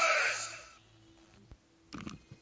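A voice and music end within the first second, leaving near silence with a faint steady low hum, broken by a single click a little past halfway and a short knock at the very end.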